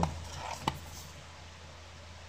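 A steady low electrical hum, with one short light click about two-thirds of a second in as a smartphone is picked up and handled.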